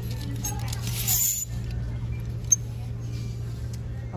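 Clothes hangers clicking and scraping along a clothing rack as garments are pushed aside, with fabric rustling, over a steady low hum. A rustling scrape comes about a second in and a single sharp click comes about two and a half seconds in.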